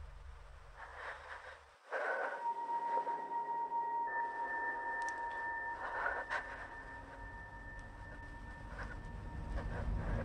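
Eerie horror-film score. A low rumble drops away just before two seconds in, then two steady high sustained tones come in suddenly and hold, with a few faint clicks.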